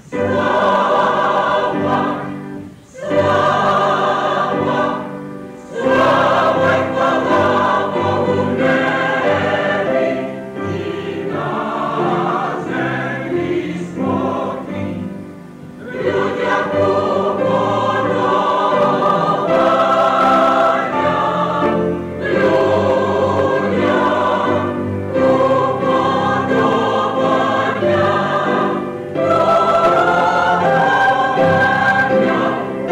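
Mixed church choir singing a Ukrainian Christmas song in full harmony, phrase after phrase, with short pauses between phrases about three, five and a half, and sixteen seconds in.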